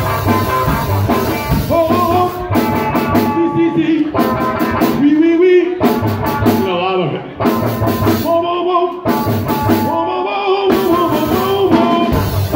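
Live rock music from a duo: a hollow-body electric guitar played over a small drum kit, with bending pitched lines above a steady beat.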